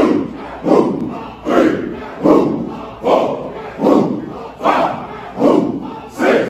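A large group of men shouting in unison, one sharp shout about every 0.8 seconds, keeping cadence through a set of push-ups.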